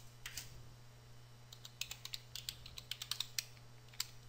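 Faint typing on a computer keyboard: a quick run of key clicks starting about one and a half seconds in, after a click or two near the start, over a low steady hum.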